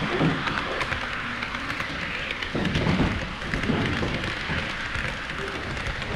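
HO-scale model trains running close by on Kato Unitrack: a steady rolling rattle of metal wheels on the rails, full of small clicks.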